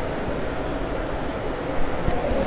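Steady low room noise, a continuous rumble with no distinct events.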